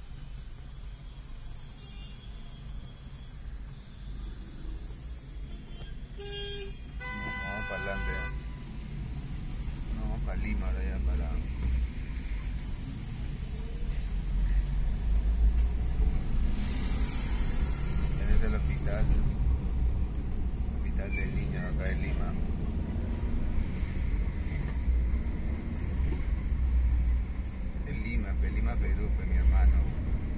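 Road noise inside a car driving in city traffic: a low engine and tyre rumble that grows louder from about ten seconds in. A horn sounds twice, briefly and then a little longer, about six to eight seconds in.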